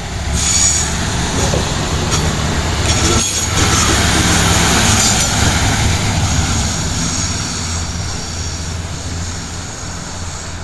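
Siemens Desiro Classic diesel multiple unit (DB class 642) passing close by, its diesel engine drone and wheel-on-rail rolling noise. The sound swells within the first second, is loudest about four to five seconds in, then fades steadily as the railcar pulls away.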